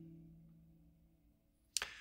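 An electric guitar's last notes ringing on and fading away to near silence over about a second. A brief sharp noise comes near the end.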